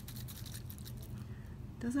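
Faint ticks and rustle from a blue-capped plastic tube of water and pink packing peanuts being handled and tilted, over a low steady room hum; a woman starts speaking near the end.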